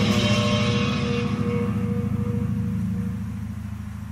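The end of a visual kei rock recording: a sustained low chord rings on and fades steadily, its higher tones dying away first.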